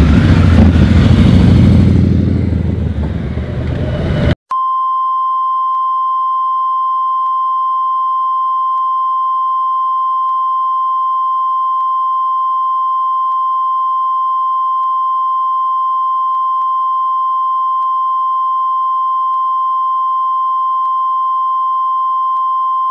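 A motorcycle engine running loudly as the bike rides past, for about four seconds, then cut off abruptly. A steady single-pitched test-card tone follows and holds to the end.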